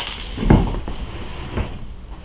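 Two dull thumps from searching through storage under a desk: a louder one about half a second in and a softer one near the end.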